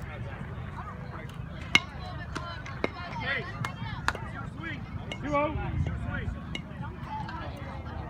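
Indistinct spectator voices and chatter at a youth baseball game, with one sharp crack about two seconds in as the pitch reaches the plate, followed by a couple of lighter knocks.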